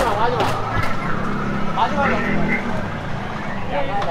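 Street noise: voices of people talking nearby over the low, steady rumble of a vehicle going by, with a single knock about a second in.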